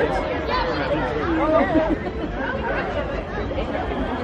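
Several people chatting close by, their voices overlapping in continuous conversation, over a steady low rumble.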